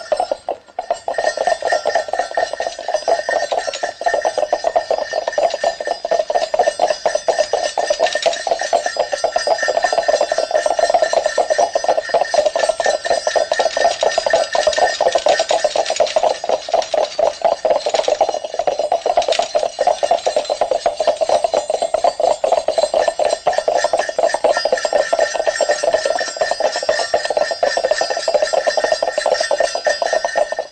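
A small bell ringing rapidly and without pause, a dense, even rattle of strikes that cuts off suddenly at the end.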